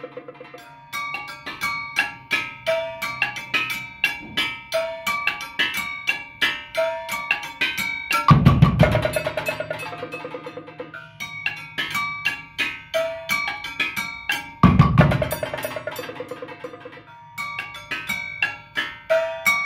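Percussion ensemble playing a fast, repeating pattern of pitched struck notes over drums and congas, with two loud, deep drum hits, one about eight seconds in and one near fifteen seconds.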